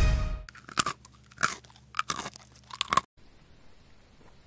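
A trailing music note fades, then a person bites and chews crunchy food: about six loud, sharp crunches over two and a half seconds. They stop abruptly and only faint background is left.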